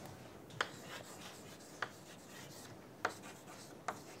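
Chalk writing on a chalkboard: four sharp taps of the chalk against the board, spread across the few seconds, with faint scratching between them.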